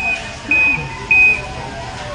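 A floor-scrubbing machine beeping three times, short high steady beeps about half a second apart, over faint store background music.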